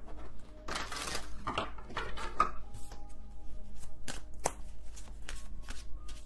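A deck of tarot cards being shuffled by hand: a run of quick, irregular card clicks and snaps.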